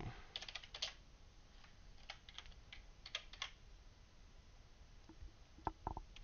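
Faint computer keyboard typing in short bursts of keystrokes, with a few separate clicks near the end.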